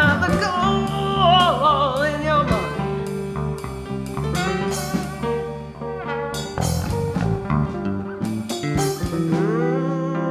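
Band music: an electric bass line under acoustic guitar and other instruments, with a wavering lead melody in the first two seconds or so.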